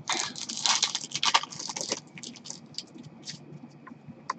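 A hockey card pack's wrapper being torn open and crinkled by hand. The dense crinkling fills the first two seconds, then thins to a few scattered crinkles and clicks.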